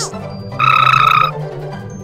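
A short buzzy, croak-like comic sound effect: one held tone with a rapid rattle, starting about half a second in and lasting under a second, over light background comedy music.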